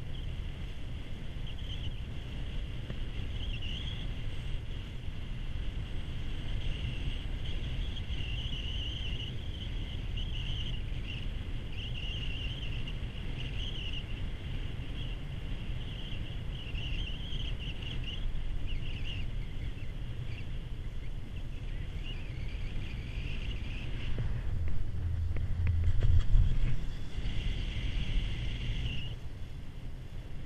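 Steady low rumble and wind on the microphone during a ride on a 1993 Poma four-seat chairlift, with a faint wavering high whine from the line. About 24 seconds in the rumble swells for a few seconds, loudest around 26 s, as the chair passes a tower and runs over its rope sheaves.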